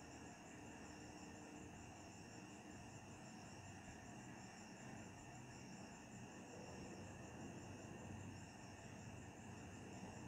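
Near silence: faint room tone with a steady high-pitched background drone.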